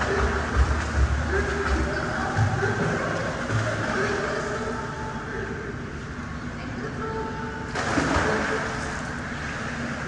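Water splashing from a swimmer kicking and thrashing in a pool. It is heaviest in the first two seconds and eases off as the swimmer moves away, with another surge of splashing a little before eight seconds.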